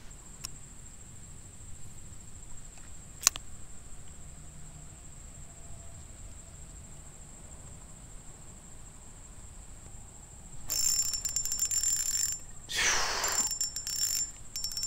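Quiet outdoor background with a faint steady high tone and a single sharp click about three seconds in. About eleven seconds in, a baitcasting reel is cranked: a rapid mechanical whirring and clicking in two short bursts, retrieving the small lure.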